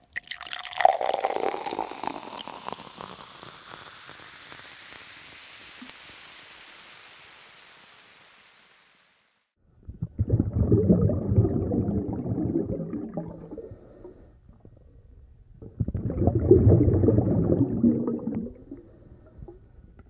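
A sudden hit with a long fading tail. After a brief gap come two rough bursts of rushing, sloshing water as a ute drives through the overflowing causeway.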